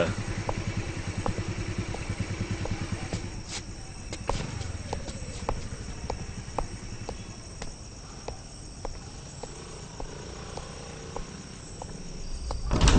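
A motor scooter's small engine running and dying away over the first few seconds, with slow, evenly spaced footsteps on hard ground, a little under two a second, going on throughout.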